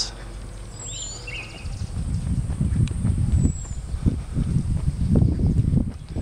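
Uneven low rumbling of wind on the microphone outdoors, starting about a second and a half in and growing louder, with a brief bird chirp about a second in.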